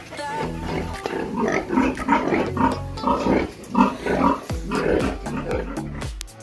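Domestic pigs in a piggery giving a series of short calls from about a second in, over background music with a steady beat.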